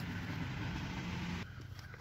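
Steady low hum of a running engine in the background, dropping away about one and a half seconds in.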